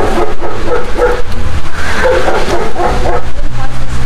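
Shepherd dog barking repeatedly in a quick run, several barks a second.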